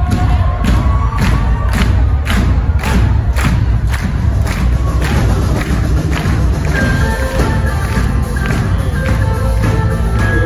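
Live concert music played loud through a venue's sound system and heard from within the crowd: a heavy bass pulse with a thump about twice a second, then held guitar notes coming in about seven seconds in, with crowd noise underneath.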